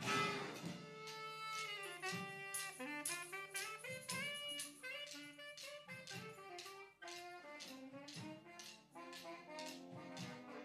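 Brass band with drum line playing jazz: a loud full-band chord at the start, then a saxophone solo line over held low notes and a steady drum beat.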